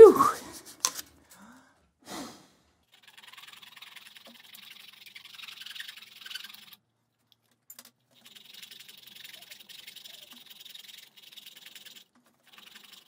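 Faint, on-and-off scratching and rubbing as hands handle the wooden and metal parts of a marble machine, with a couple of light knocks. Right at the start there is one short, loud, falling sound like a voice.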